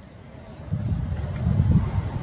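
Low, uneven rumble of wind buffeting the microphone, picking up about two-thirds of a second in, with faint distant voices under it.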